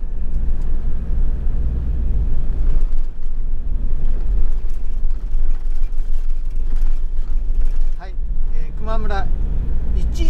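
Steady low rumble of a camper van on the move, heard from inside the cabin: engine and tyre noise on the road. A brief voice cuts in near the end.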